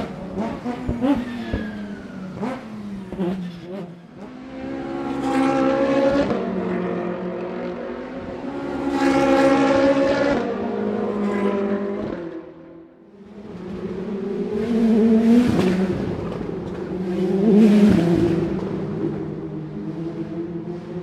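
Race car engines passing at speed one after another, each pass building to a loud peak and fading, with a brief lull about two-thirds of the way through. The first few seconds hold a run of short, sharp knocks among the engine noise.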